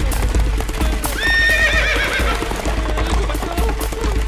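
Cartoon sound effects of a galloping horse: fast clip-clopping hooves, with a wavering whinny starting about a second in and lasting about a second. Background music runs underneath.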